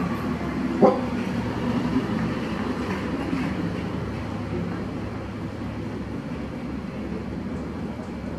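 Steady low rumble of background noise that slowly fades, with one sharp knock about a second in.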